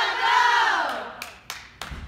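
A group of girls shouting a long, drawn-out call together, their voices rising and falling and fading out about halfway through. Three sharp clicks and a low thump follow near the end.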